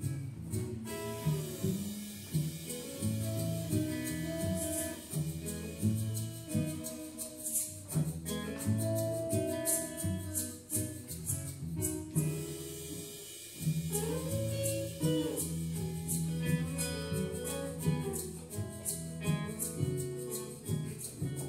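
Live acoustic band playing an instrumental passage: acoustic guitar, upright double bass and drum kit together.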